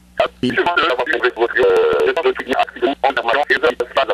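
Speech only: a man talking in French over a telephone line.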